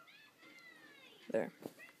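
A cat meowing once, a drawn-out call that falls in pitch over about a second.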